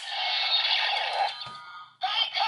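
Electronic sound effect from the small speaker of a DX Ghost Driver toy belt loaded with the Ishinomori Ghost Eyecon: a dense buzzing electronic tone that fades out near the end, with a soft knock about one and a half seconds in.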